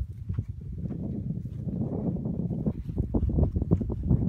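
Footsteps of a hiker walking along a grassy trail, a quick run of soft steps and brushes, over a low rumble of wind on the microphone.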